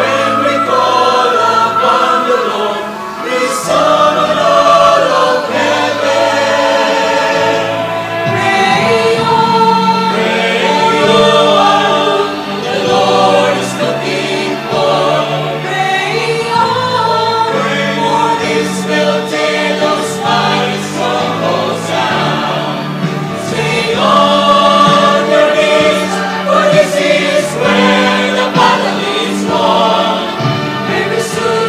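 Mixed choir of men's and women's voices singing a Christian worship song together over steady held low notes, with no pauses.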